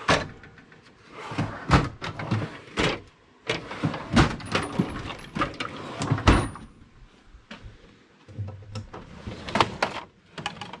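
Metal drawers of a Craftsman tool chest being slid open and pushed shut one after another, a series of sharp clunks and clicks with rustling between.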